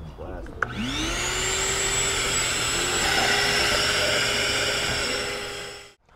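Shop vacuum starting up about a second in, its motor whine rising quickly and then running steadily with a rushing of air, as it sucks the diesel out of the fuel filter housing. The sound fades out just before the end.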